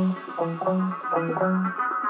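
Instrumental music: a melody of plucked guitar notes over a low repeating note, with no percussion.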